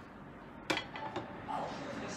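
Tableware clinking on a table: one sharp clink about two-thirds of a second in, then two lighter knocks.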